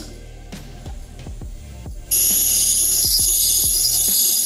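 Background music with a steady beat; about two seconds in, a loud, high scratchy hiss starts suddenly and holds steady as a small graver's tip is set onto a spinning 180-grit sharpening wheel and begins grinding its face.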